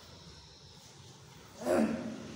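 A pause with only faint room tone, then about one and a half seconds in a short, loud vocal sound from a man: a brief cry or exclamation with a falling pitch.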